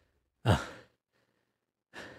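A man's short, breathy, pained "uh" about half a second in, a sigh whose pitch falls away, followed by a faint intake of breath near the end.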